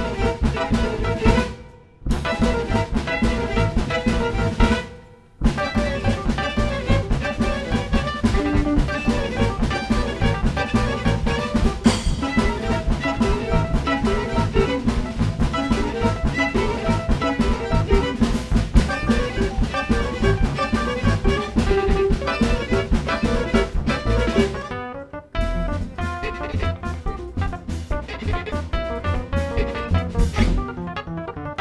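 Tango sextet playing live: bandoneon, violin, keyboard, double bass, guitar and drum kit. The whole band cuts off sharply twice in the first five seconds, then plays on steadily with a driving beat, easing briefly near the end.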